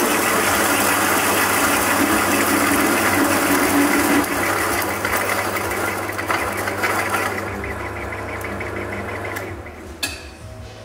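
Electric coffee grinder's motor starting abruptly and grinding, a dense mechanical whirr; it drops somewhat in level about four seconds in and stops just before the end.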